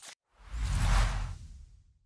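A whoosh sound effect for an animated logo sting: it swells up with a deep low rumble, peaks about a second in, then fades away, the highest part dying out first.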